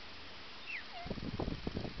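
An umbrella cockatoo giving a short falling whistle, then about a second of quick, low, pulsing sounds.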